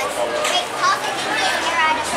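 Several young girls' voices calling and chattering over one another, high-pitched and overlapping.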